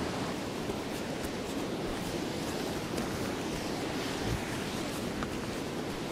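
A river rushing steadily over rocks, a continuous even wash of water noise.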